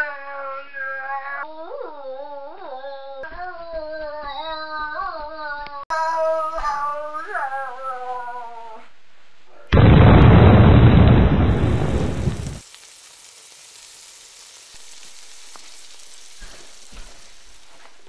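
A high, wavering melody for about the first nine seconds. Then an abrupt, loud explosion sound effect lasts about three seconds and cuts off sharply into a faint steady hiss.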